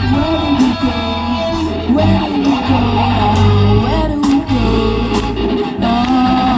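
Live rock band playing a classic rock song on electric guitars, bass guitar and drum kit, amplified through stage speakers.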